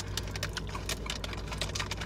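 Close-up chewing of crispy plantain chips: a dense run of small, sharp crunching clicks over a steady low hum.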